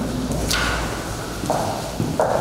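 Sheets of paper being handled and shuffled on a table, with a short crisp rustle about half a second in, over a steady low hum in the room.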